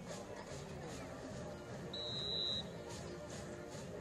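A referee's whistle blows one short, high blast about two seconds in, over background music and crowd noise.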